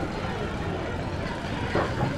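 Open-air street market ambience: faint background voices of people talking over a steady low rumble.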